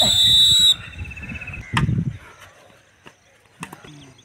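A coach's whistle blown once, a short, loud, high-pitched blast lasting under a second. A shorter sharp burst follows about two seconds in.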